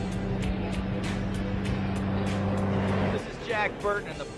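Semi-truck engine running with a steady low drone, growing slightly louder, then cutting off abruptly about three seconds in; a man's voice starts just after.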